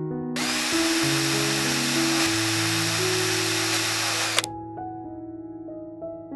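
A small power tool, drill-like, runs steadily for about four seconds, starting and cutting off abruptly.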